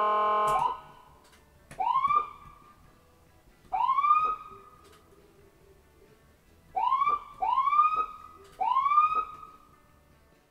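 Electronic ambulance siren. A steady, horn-like tone cuts off under a second in. It is followed by five short whoops, each sweeping quickly up in pitch and holding briefly; the first two come about two seconds apart, the last three closer together.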